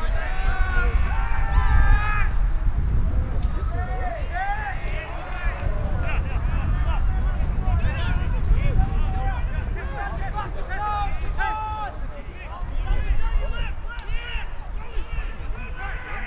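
Footballers and onlookers shouting calls at a distance, over a steady low rumble of wind on the microphone.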